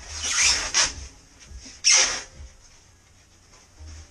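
Packaging rubbing and scraping against a wrapped aluminum roof panel as it is handled: a longer rub in the first second and a short, sharp scrape about two seconds in, the loudest moment.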